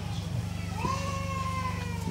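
A single drawn-out, meow-like cry starting under a second in: it rises quickly, then holds and drifts slowly down for about a second. A steady low hum runs underneath.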